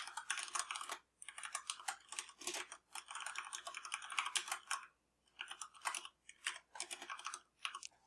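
Typing on a computer keyboard: quick runs of key clicks, broken by short pauses about a second in and again past the middle.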